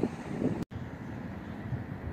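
Wind buffeting the microphone: a steady low rumble with no detector tones, cutting out for an instant about two-thirds of a second in.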